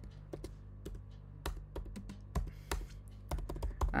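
Computer keyboard typing: irregular keystroke clicks, coming in a quicker run near the end.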